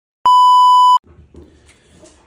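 Colour-bars test-tone beep: one loud, steady, high beep lasting under a second, which starts out of dead silence and cuts off suddenly. Faint room noise follows.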